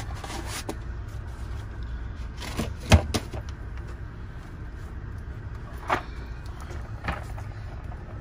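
Boxed tool sets and cases being handled in a toolbox drawer, with several knocks of boxes and drawers, the loudest about three seconds in, over a steady low hum.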